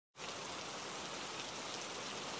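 Steady rainfall: an even hiss of rain that sets in a moment after the start and holds at one level.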